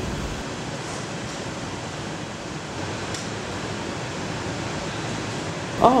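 Steady, even background noise of a glassblowing hot shop: ventilation fans and furnace burners running.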